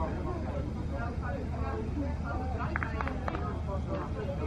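Faint, indistinct distant voices over a steady low rumble.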